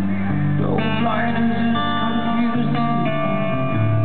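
Live band playing an instrumental passage of a slow rock ballad: guitar chords ringing over held bass notes, with a couple of fresh strums about a second in and again near three seconds.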